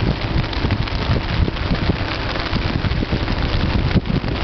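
Tesina river in flood rushing past the bridge: a steady, loud noise of water, with wind buffeting the microphone in irregular low rumbles.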